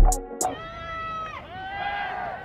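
Background music with a drum beat cuts off shortly after the start. It is followed by a long, high, voice-like call that holds its pitch and then drops about halfway through.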